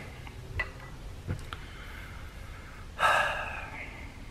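A few faint metal clicks and knocks from a ratchet being handled and set down, then about three seconds in a loud breathy exhale that fades over most of a second.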